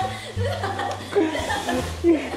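People laughing and chuckling.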